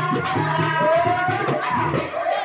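Live folk music: a man singing over drums and jingling bells played in a fast, even beat of about four strokes a second.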